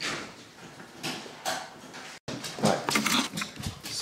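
A dog whimpering and making small noises, broken by an abrupt cut about two seconds in, followed by knocks and rustling as the camera is handled.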